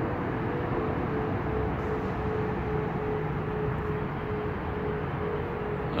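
Steady background rumble and hiss with a faint, even humming tone, unbroken and without any sudden sounds.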